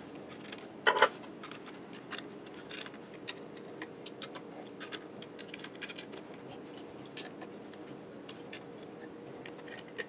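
Allen (hex) key clicking against the steel bolts and aluminium spindle mount as they are tightened down: faint, scattered light metallic ticks, with one brief louder sound about a second in.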